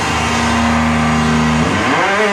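Electric guitar and bass of a live heavy rock band holding one low, ringing note, which then slides in pitch near the end.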